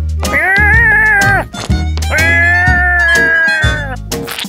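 Two long wavering wailing screams from a cartoon character, the second longer, over background music with a steady bass line.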